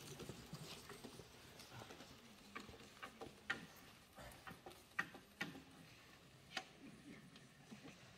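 Quiet room tone with scattered faint clicks and taps, a few strong ones about a second or so apart.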